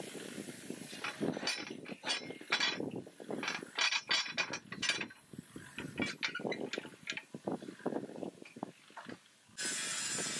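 Steel parts of a homemade bar bender knocking and clinking as the bending arm and a pipe lever are fitted over its steel pin: a run of irregular metallic clicks and clanks. Near the end a steady hiss comes in suddenly.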